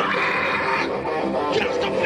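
Live band playing: electric guitar with a vocalist singing or shouting into a microphone, through an amp and PA.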